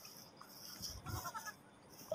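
A faint animal call a little after a second in, over quiet background.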